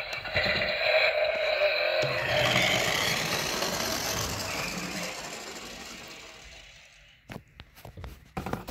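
Battery-powered toy race car playing its electronic engine sound. It is loud at first, fades steadily after about five seconds and dies out near seven, and a few sharp clicks follow near the end.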